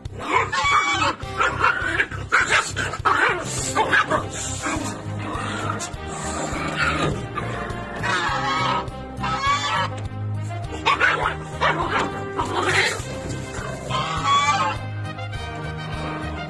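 Background music with a puppy barking in repeated short bursts over it.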